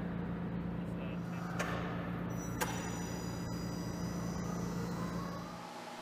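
A steady low mechanical hum, with a few faint clicks and knocks and a brief high thin whine in the middle; it fades down just before the end.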